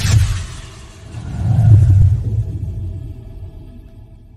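Logo-intro sound effects: a sharp crack timed to an animated lightning strike, then a deep rumbling boom that swells to its loudest a second and a half to two seconds in and slowly fades.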